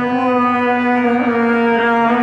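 Ghazal music: a harmonium and voice hold one long steady note.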